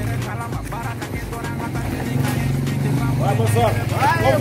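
A small motorcycle engine running steadily and getting a little louder, under background music. A voice starts calling out about three seconds in.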